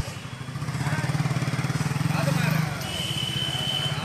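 An engine running with a rapid, even low putter that builds about half a second in and eases after the middle, with voices talking in the background.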